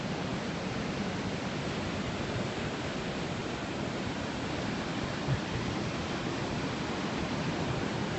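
Steady rush of fast-flowing, turbulent river water.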